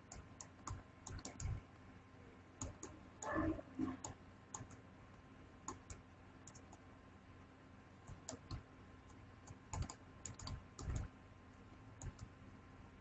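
Faint, irregular clicks and taps of a stylus on a pen tablet as characters are handwritten, in short clusters with pauses between them and a few louder knocks.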